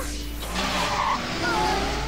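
Cartoon sound effect of a car's tyres screeching as it suddenly takes off, a loud hiss lasting about a second and a half.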